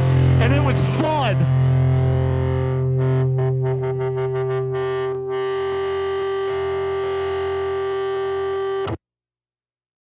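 Hardcore punk recording ending on a distorted electric guitar chord left ringing as a steady sustained tone, with wavering pitched squeals in the first second or so. It cuts off suddenly about nine seconds in.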